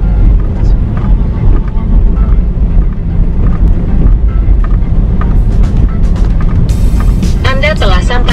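Steady low rumble of a car driving slowly, heard from inside the cabin. Music and a voice come in near the end.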